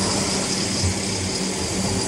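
Large farm tractor's diesel engine running under load as it pushes chopped maize up a silage heap, a steady low engine hum with a faint high whine over it.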